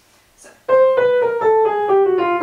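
Upright piano playing a quick run of chords that steps steadily downward, starting just under a second in. It is the chain of ii half-diminished to V7 chords falling through keys a tone apart, its outer lines moving down in whole tones and its inner lines chromatically.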